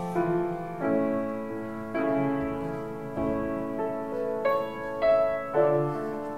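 Piano playing slow chords, each struck and left to ring, with a new chord about every second.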